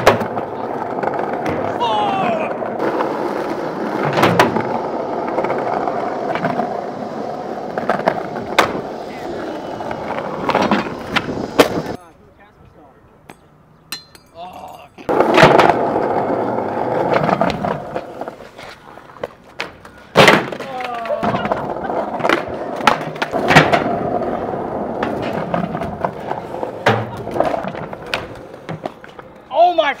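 Skateboards rolling on stone pavers, with sharp tail pops, board slaps, landings and boards sliding along a ledge; the rolling drops out suddenly for about three seconds in the middle, then resumes.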